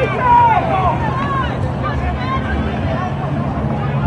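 Spectators' voices and shouts along the touchline, not made out as words, strongest in the first second or so, over a steady low hum.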